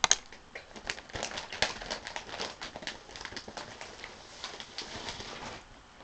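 Close handling noise: one sharp click, then a dense run of crinkles and clicks, like plastic being handled near the microphone, that stops shortly before the end.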